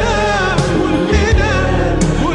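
Arabic pop song: sung vocals with vibrato over a band backing with bass and drums.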